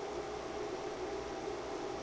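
Steady hiss with a low hum from dental equipment running during ultrasonic debridement.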